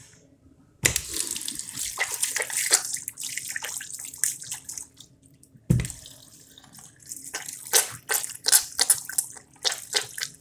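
Water from a commercial countertop sink tap running into the ceramic bowl with irregular splashing. It starts suddenly about a second in, stops briefly near the middle, then starts again with a thump.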